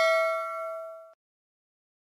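Notification-bell sound effect ringing out: several clear tones that fade, then cut off abruptly about a second in.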